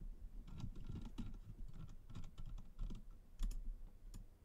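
Computer keyboard being typed on in quick, irregular keystrokes, with a slightly louder pair of clicks about three and a half seconds in.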